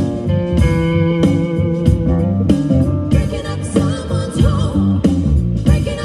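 Live blues band: a Flying V electric guitar plays held lead notes, some with vibrato, over bass guitar and drums.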